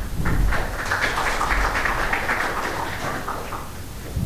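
Applause from a small group clapping by hand. It swells within the first second and fades away near the end.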